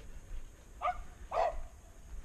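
A dog barking twice, two short barks about half a second apart.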